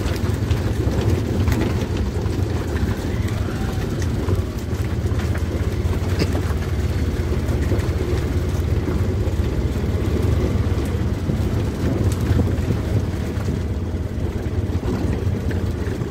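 Steady low rumble of a moving vehicle with wind buffeting the microphone, running evenly without a break.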